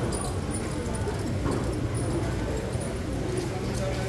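Indoor market ambience: indistinct chatter of shoppers and vendors over a steady low hum, with scattered small clicks and knocks.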